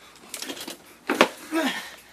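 A sharp thump about a second in, the loudest sound, followed by a short vocal groan that falls in pitch; a brief scuffing noise comes before the thump.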